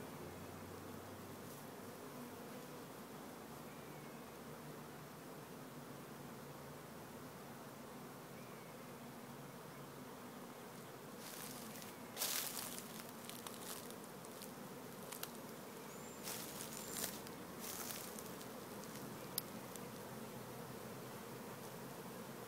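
A honeybee swarm buzzing as a steady, low hum. From about twelve seconds in come a few knocks and scrapes of wooden hive frames being lifted out of the trap box.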